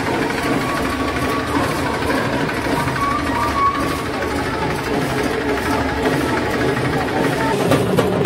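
Tractor's diesel engine running close by with a rapid, steady knocking beat, over the voices of a street crowd.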